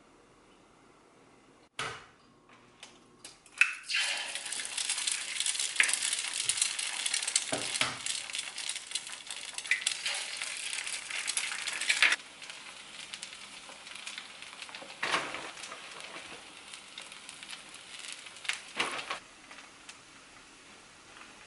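Eggs frying in a hot four-cup egg pan. After a knock and a few clicks, the sizzling starts about four seconds in and is loudest for the next several seconds. It then settles to a softer sizzle, with two short flare-ups as more egg goes into the pan.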